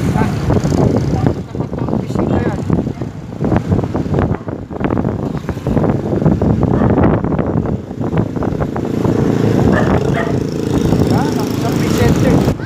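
A small road vehicle's engine running while riding along a street, with a loud, rough, uneven noise throughout.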